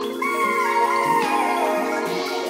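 Background music: held notes with a melody that steps downward in pitch.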